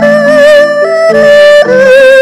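Erhu playing a sustained, singing bowed melody with vibrato and small slides between notes, over lower notes from a wooden xylophone with gourd resonators that change in steps.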